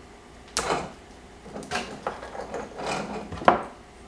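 Electrical tape being pulled and ripped off a car-stereo wiring harness in a few short rasps, the loudest a sharp snap near the end.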